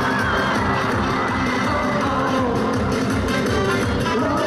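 Live pop music at a concert, loud through the hall's sound system with a steady bass-drum beat, and the audience cheering over it.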